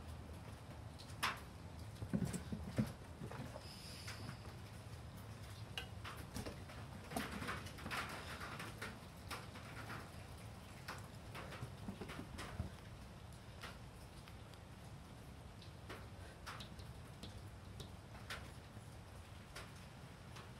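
Scattered light taps and patters of a cat's paws on wooden deck boards as it dashes and pounces after a laser dot, busiest in the first half and sparser later, over a faint steady background.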